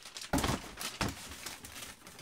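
Handling noise from a cardboard shoe box and a plastic bag being moved: a couple of sharp knocks, about half a second and a second in, with light crinkling between.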